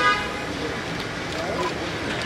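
A vehicle horn gives one short toot right at the start, the loudest sound here, over a steady murmur of outdoor voices. A faint short beep follows about one and a half seconds in.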